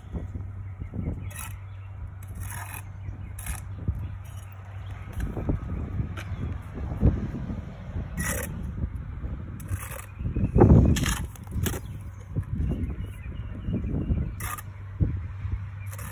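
A 9-inch steel brick trowel dipping into mortar and clicking and scraping against bricks as bricks are laid one after another by the pick-and-dip method. There is a heavier thump a little past the middle, and a steady low hum runs underneath.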